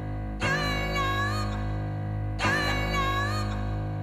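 Music played in a DJ set: a short, wavering pitched phrase starts again about every two seconds over a steady bass line.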